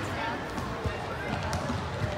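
Basketball bouncing on a gym floor during play: a few dull thumps, the clearest just under a second in, under the chatter of spectators' voices.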